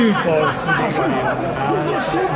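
Speech only: people chatting in Italian close to the microphone.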